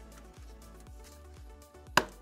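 Soft background music, and near the end one sharp click: a plastic side-panel boss popping out of its rubber grommet as the panel is pulled free of the motorcycle.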